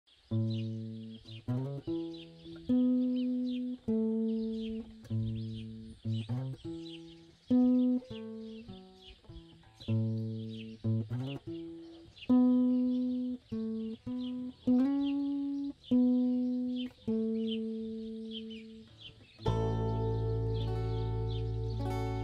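Guitar music: single plucked notes, each ringing and fading before the next, with faint high chirping underneath. Near the end a fuller, sustained chord comes in.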